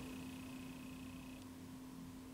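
Quiet room tone with a faint steady low hum; a faint high tone stops about one and a half seconds in.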